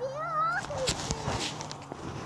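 A young child's high, wavering vocal sound in the first half second or so, over a low steady hum.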